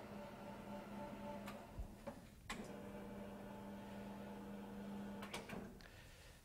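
Faint steady electrical hum in a quiet room, broken by a few light clicks and knocks, with a short break in the hum about two seconds in.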